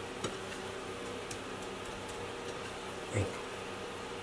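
Steady low background hum with a few faint clicks of hands pressing breadcrumbs onto a breaded veal cutlet on a plate, and one brief short sound about three seconds in.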